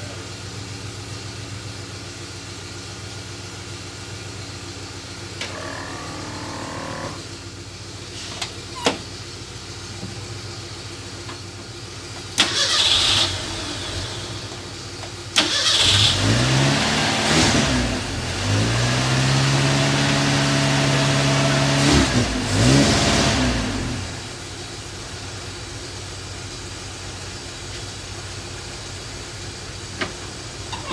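Ford Mustang II engine running at a low idle, then revved in two short blips a little under halfway through, followed by a longer rise in revs held for a few seconds before it falls back to idle. It runs, but not smoothly.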